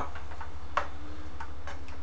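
A few faint clicks of a spoon stirring shrimp in a frying pan, over a steady low hum with a fast, even ticking pulse.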